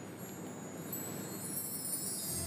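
A shimmer of high chimes fading in and growing louder: the start of a soft background music cue.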